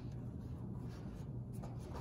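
Paper pages of a hardcover picture book being handled and turned, a quiet rustle over a low steady room hum.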